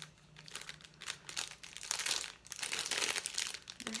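Brush packaging rustling and crinkling in the hands as it is handled and worked at to get it open. The sound comes in irregular fits and starts, quieter in the first second.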